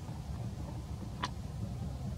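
A steady low outdoor rumble with one sharp click a little after a second in.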